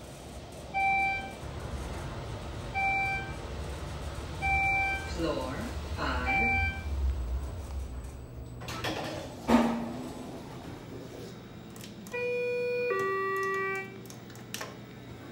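Schindler 400AE elevator car running up over a low rumble, giving four short electronic beeps about two seconds apart as it passes each floor. A sharp thump comes about halfway through, then a two-note falling electronic chime sounds near the end as the car arrives.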